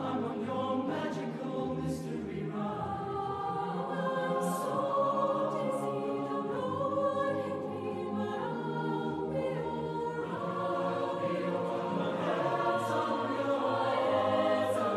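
Large mixed university choir singing in parts, men's and women's voices together, holding notes that shift every second or so.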